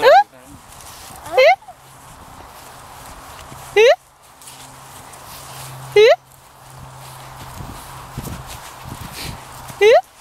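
A person's voice giving short, high, rising whoops, five of them spaced about two seconds apart, each sweeping quickly upward in pitch.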